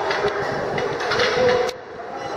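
Steady din of a buffet restaurant hall, with a sharp clink near the end.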